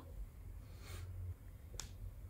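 Pen on paper: a faint brief scratch about a second in, then a single sharp tap of the pen tip near the end.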